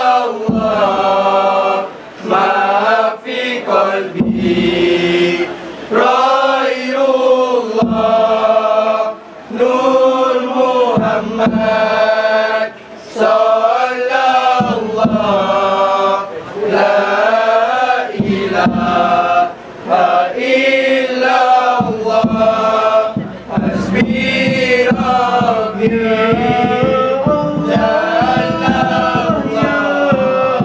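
A group of male voices chanting a selawat, a devotional Islamic praise song, in unison, in phrases of a few seconds separated by brief pauses.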